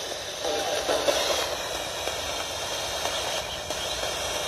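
Steady radio static hiss from a spirit-box style ITC radio device, with faint, choppy voice fragments from about half a second to a second and a half in.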